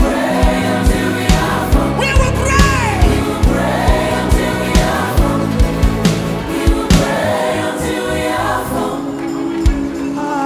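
Live gospel worship music: a choir and lead singers singing over a full band, with a steady drum beat of about two strokes a second.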